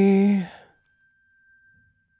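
A man's voice holding the last sung note of a song, unaccompanied, which fades out about half a second in; after it, near silence with a faint, thin steady tone.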